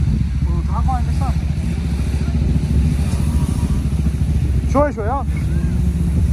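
A vehicle engine running loud and steady under load during a tow-strap recovery of a car stuck in soft sand. Short wavering shouts come in about a second in and again near five seconds.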